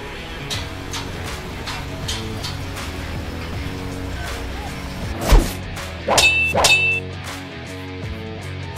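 Construction sound effects of metal being struck, over background music: a heavy thud about five seconds in, then two ringing metal clangs a moment later.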